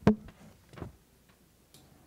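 A short spoken "yes", then a sharp knock and a few faint light clicks.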